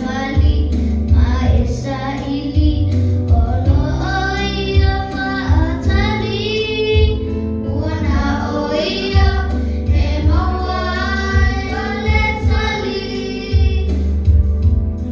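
Children singing into handheld microphones over music with a heavy, repeating bass line.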